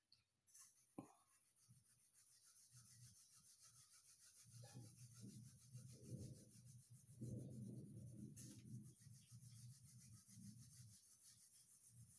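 Faint, quick back-and-forth strokes of a colored pencil shading across a sheet of paper, a little louder in the middle.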